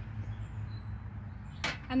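A steady low background hum, then one short sharp knock about a second and a half in as a drinking glass is set down on a cast-metal table.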